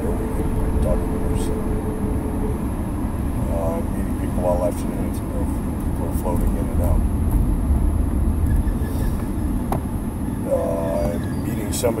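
Steady low road and engine rumble inside a moving car's cabin, with short faint snatches of speech now and then.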